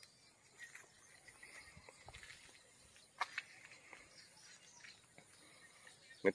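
Near silence: faint outdoor ambience with a few soft clicks, one sharper click about three seconds in.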